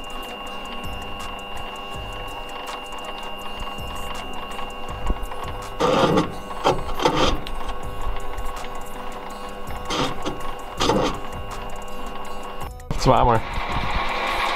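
Milling machine running with a steady whine while its cutter machines the aluminium crankcase of a Puch Maxi moped engine, with a few brief louder bursts along the way.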